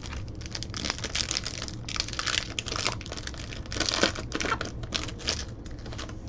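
Foil wrapper of a trading-card pack crinkling as it is torn open and the cards are pulled out: a run of quick crackles, loudest about four seconds in.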